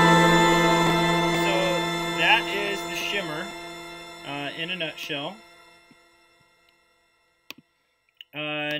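Guitar through a shimmer reverb: a held, smeared chord with an octave-up shimmer on top, slowly fading out to silence over about six seconds.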